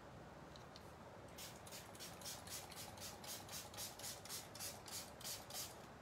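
Shaker of Magicals watercolour powder being shaken over paper: a faint, rhythmic swishing, about four shakes a second, starting about a second and a half in.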